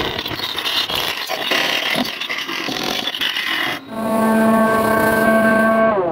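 Wood lathe turning: a gouge cutting a spinning wood-and-resin blank, a rough steady scraping hiss. A little under four seconds in it changes abruptly to a steady pitched whine of a lathe spinning.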